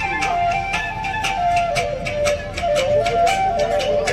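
Mising folk music for the Gumrag dance: a flute plays a stepping melody over a quick, steady beat of drum and percussion strikes.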